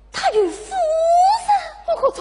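A Yue opera actress's drawn-out stage exclamation: a short falling cry, then a long held vocal note that rises at its end.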